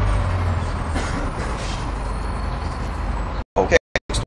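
Steady low rumble and hiss of street traffic. The sound cuts out abruptly near the end, with short gaps.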